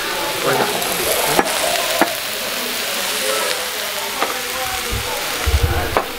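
Chicken and beef fajitas sizzling on a hot iron skillet, a steady hiss, with two sharp clicks about one and a half and two seconds in.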